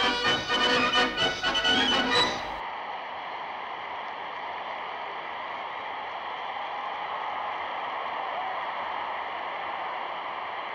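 Newsreel background music that cuts off abruptly about two and a half seconds in, giving way to a steady, even murmur of a large stadium crowd on an old, band-limited recording.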